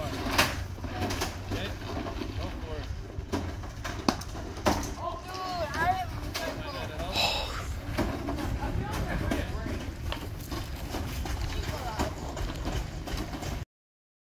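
Outdoor ambience of wind rumbling on the microphone, with distant voices calling out and a few sharp knocks; the sound cuts off suddenly near the end.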